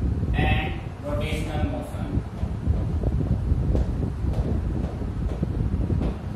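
A man's voice for about the first two seconds, then chalk tapping and scratching on a blackboard as he writes, all over a steady low rumble.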